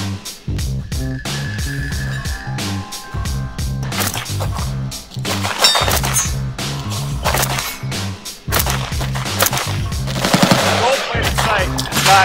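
Gold-plated AK-47 rifle firing strings of rapid shots, mixed under loud background music with a heavy bass beat.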